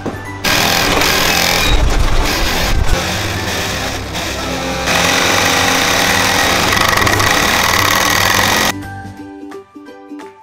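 Industrial sewing machine running fast, stitching car-seat upholstery with a loud, rapid mechanical rattle that stops suddenly about nine seconds in. Light plucked-string background music plays under it and carries on alone at the end.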